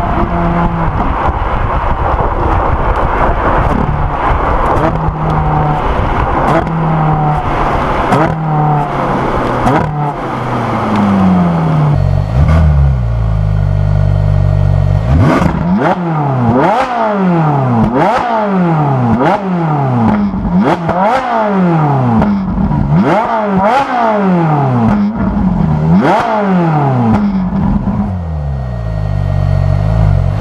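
Ferrari 458 Italia's 4.5-litre V8, heard close to its exhaust: first pulling at road speed, then the note drops and settles to a low idle. From about halfway through, a run of quick throttle blips about one a second, each revving up sharply and falling straight back, with crackles from the exhaust as the revs drop.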